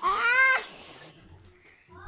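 A baby's high-pitched squeal: one arching cry about half a second long at the start, with a breathy edge.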